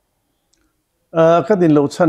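About a second of near silence, then a man speaking.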